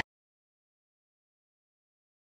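Complete silence: the sound track cuts off dead, with no sound at all.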